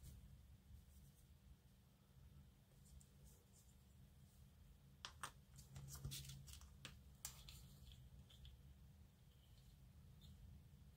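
Near silence, with a few faint clicks and taps from small plastic model-kit parts being handled, clustered between about five and seven seconds in.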